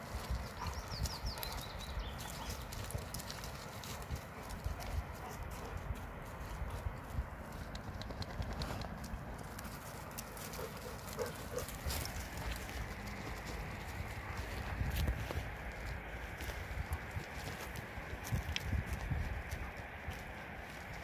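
A Bernese mountain dog and a flat-coated retriever scuffling and running on loose gravel and stones, their paws clattering in irregular clicks over a steady low rumble.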